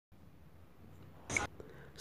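Near silence, then a single short, soft swoosh-like tap a little over a second in: the tap sound effect of a subscribe-button animation.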